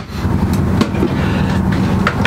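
A steady low mechanical hum and rumble, with a sharp click right at the start as a small cabinet door latches shut. A few light knocks follow as a plastic step trash can is handled on the floor.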